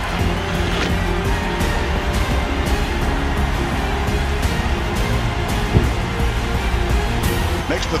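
Steady stadium crowd noise with music playing underneath.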